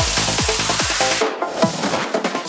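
Psytrance track: a driving kick drum with a rolling bassline between the beats, then about halfway through the kick and bass drop out, leaving only the higher synth lines in a short break.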